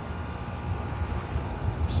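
A steady low rumble with no clear single source.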